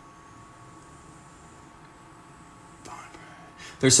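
Quiet room tone with a faint steady high whine that fades out partway through, a brief soft sound about three seconds in, then a man starts speaking near the end.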